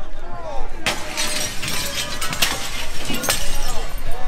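Window glass being smashed: a sharp crack about a second in, then crashing and tinkling glass, with further hard smashes near the middle and toward the end, over shouting voices.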